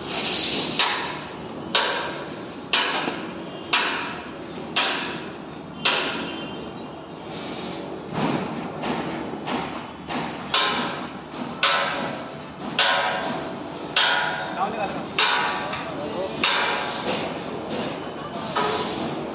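Hammer blows on the steel of a tower crane's mast and climbing frame, about one a second, each with a short metallic ring. The blows pause for about four seconds in the middle, then go on at the same pace.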